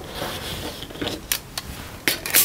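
Die-cut paper card pieces and small craft tools being handled on a table: a brief rustle, then a few light clicks and taps.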